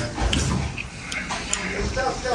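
A man eating noodles close to the microphone: slurping and chewing, with a few small clicks.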